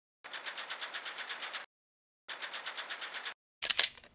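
Intro-animation sound effect: two runs of rapid, evenly spaced clicks, about a dozen a second, with a short gap between them, then a louder short clattering hit near the end as the logo lands.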